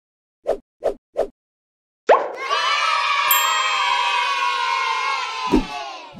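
Intro sound effects: three quick pops, then a recorded crowd of children cheering and shouting for about three seconds, ending with a short sweeping sound near the end.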